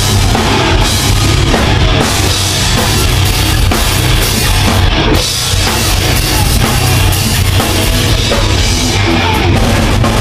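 Live metalcore band playing loud, with heavy guitars and a drum kit; the music briefly drops about five seconds in.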